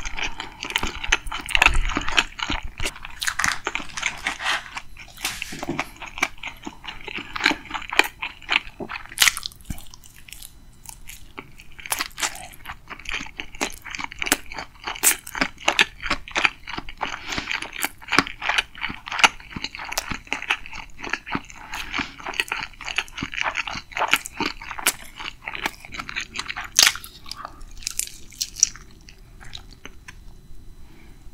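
Close-miked chewing of crispy yangnyeom (sauce-coated) fried chicken: crunchy bites and wet, crackly mouth sounds in a dense run, with a short lull about ten seconds in.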